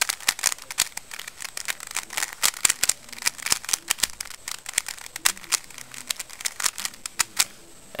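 A plastic Rubik's Cube having its layers twisted in quick succession: a rapid, irregular rattle of clicks from the turning faces, stopping shortly before the end.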